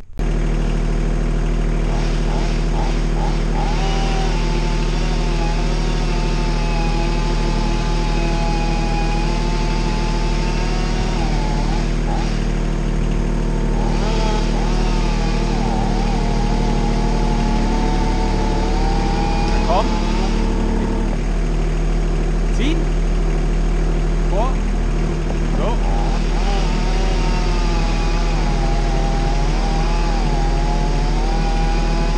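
Truck-mounted felling crane at work: the carrier's engine running steadily to drive the crane, with a whine that wavers up and down in pitch as the crane is operated. The engine note shifts lower about two-thirds of the way through.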